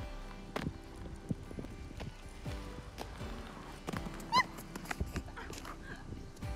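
Quad roller skate wheels rolling and knocking on concrete as a skater turns through a transition, with one short, loud squeak just after four seconds in. Instrumental background music plays throughout.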